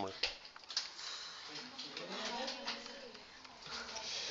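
Faint, muffled voices talking in the background of a small room, with a few light clicks from the keys of a handheld calculator being pressed.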